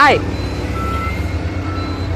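Engine of a hirail material leveler (small wheel excavator) running with a steady low hum. A short repeated voice alert ends just at the start.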